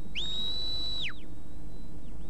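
Sheepdog handler's whistle command to his working dog: one long high note that swoops up, holds for about a second, then falls away.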